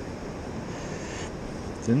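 Steady wash of surf and wind noise, with a man starting to speak at the very end.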